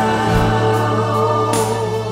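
A slow song: a singing voice over a music backing, holding long sustained notes.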